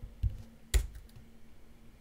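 Computer clicks: a soft click about a quarter second in, then a sharper one shortly after, followed by a few faint ticks over a faint steady hum.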